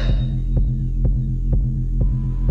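Deep house dance music: a steady kick drum about twice a second over a deep, sustained bass drone.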